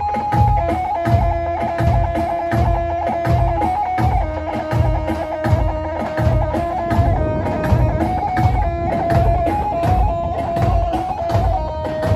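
Electric bağlama (long-necked saz) playing a halay dance melody over a steady drum beat of about two beats a second.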